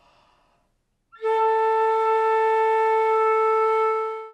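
A faint breath in, then a concert flute plays a single steady, held A (A4) starting just over a second in, a beginner's first A.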